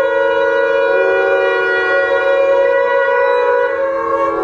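Several conch shells (shankh) blown together, their steady overlapping tones forming a sustained chord, with another tone joining about a second in.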